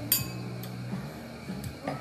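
Two stemmed glasses clinking together once in a toast, a short bright ring just after the start.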